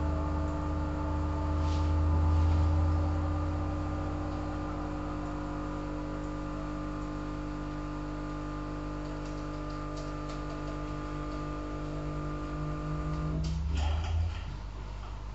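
Sustained electronic drone: a held chord of steady tones over a deep low hum, cutting off suddenly near the end with a few clicks.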